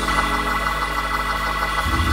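Organ holding a steady chord, then moving to a new chord with a stronger bass note near the end.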